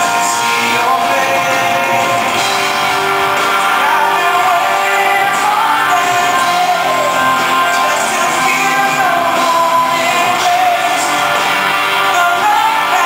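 Live acoustic pop ballad: a male lead singer singing a sustained melody over strummed acoustic guitar and a backing band, with the echo of a large hall.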